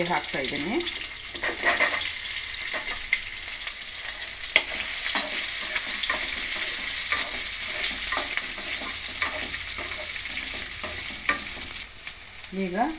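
Chopped onions sizzling as they fry in hot oil in a kadai, with a slotted metal spoon stirring and scraping against the pan in short clicks. The sizzle grows louder about five seconds in.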